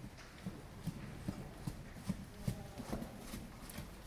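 Hoofbeats of a ridden Friesian horse trotting on arena sand: a run of soft, dull thuds.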